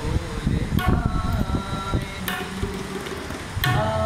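A man singing over a tabla: quick low drum strokes throughout, under a voice holding sung notes about a second in, again halfway through, and near the end.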